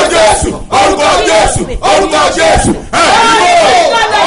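A man and a woman praying aloud together, loud and fervent, their shouting voices overlapping in long phrases broken by brief pauses.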